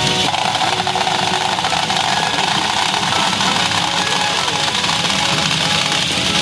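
PA Ginpara Mugen Carnival pachinko machine playing its music and sound effects during a fish-reel spin, over a dense steady clatter.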